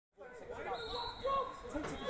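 Voices talking and calling out at a football ground, starting just after a moment of silence.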